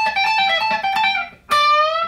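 Duesenberg semi-hollow electric guitar playing a quick run of single notes, then, after a brief break, a new note picked about one and a half seconds in and bent upward in pitch.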